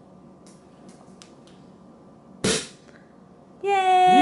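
Cork popping out of a sparkling wine bottle: one sharp pop about two and a half seconds in, after a few faint clicks as the cork is worked loose by hand. Near the end a person lets out a long, high-pitched celebratory "woo".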